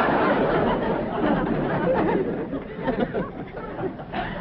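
Studio audience laughter from a sitcom laugh track, loud at first and dying away over the last couple of seconds.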